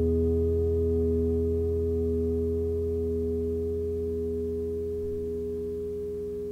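Ambient electric guitar drone: several notes held together as one unbroken chord, slowly fading.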